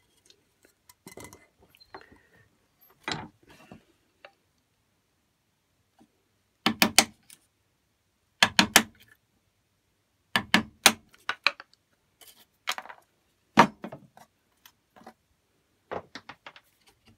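Wood chisel pressed by hand into a pine joint, paring and levering out the waste: short clusters of sharp clicks and cracks as the fibres split and chips break away, every second or two with pauses between.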